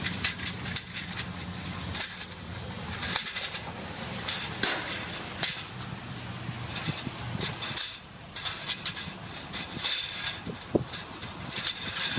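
An aluminium ladder clanking and scraping against a steel gate and wet concrete as it is pushed and wiggled through the gate's bars. It makes a series of irregular sharp metallic knocks and clatters.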